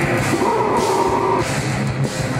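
A heavy metal band playing live at full volume: distorted guitars holding sustained notes over drums, with cymbal crashes about twice a second.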